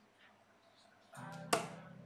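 A single steel-tip dart striking a bristle dartboard: one sharp thud about one and a half seconds in.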